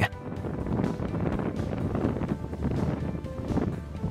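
Background music over a steady, low rushing noise.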